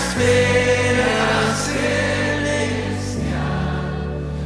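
Live worship band music: voices singing long held notes over sustained chords, the chord changing just after the start and again about three seconds in.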